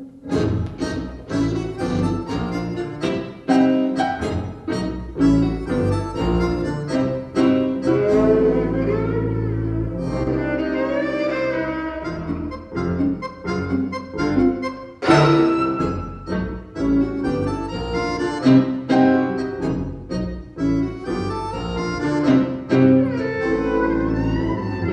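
A live instrumental quintet of violin, accordion, double bass, piano and guitar playing a busy tango-influenced piece with many quick, sharply attacked notes. The whole band comes in together suddenly right at the start.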